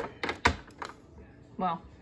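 A few sharp clicks and taps in the first second, the third the loudest, from handling an Epson all-in-one inkjet printer's scanner and lid.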